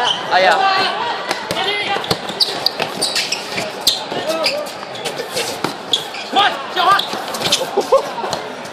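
A basketball bouncing on an outdoor hard court during play, with irregular sharp knocks from the ball and players' movement, and voices shouting in between.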